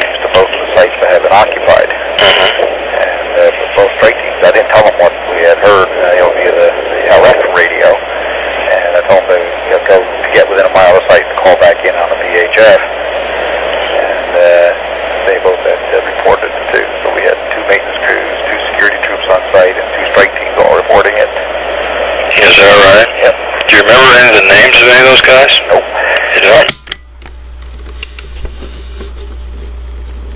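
A man talking in an old, noisy taped phone call, his voice thin and muffled. About 27 seconds in the voice stops, leaving a low hum and hiss.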